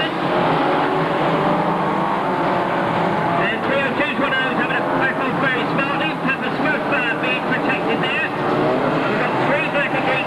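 A pack of banger racing cars running around the track, their engines revving together in a steady loud mechanical drone. A commentator's voice comes over it from about three and a half seconds in.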